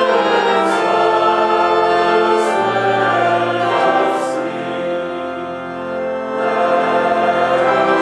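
Church organ playing sustained chords while a congregation sings a hymn, the notes changing every second or two.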